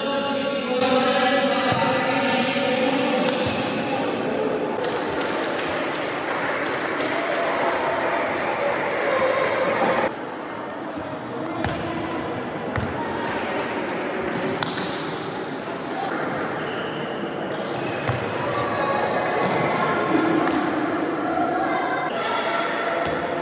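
Table tennis rally: the plastic ball clicking off bats and the table at irregular intervals, over continuous chatter of many voices in a large sports hall.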